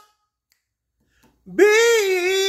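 Unaccompanied male singing voice. A held note fades out right at the start, then after a pause of over a second a new note slides up in pitch about one and a half seconds in and is held.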